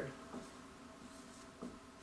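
Dry-erase marker writing on a whiteboard, faint short strokes.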